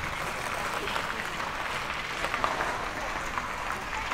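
Hands clapping: a steady, dense run of applause.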